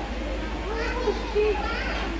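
Young children's high-pitched voices calling out excitedly, with a few short calls in the second half, over a steady low background hum.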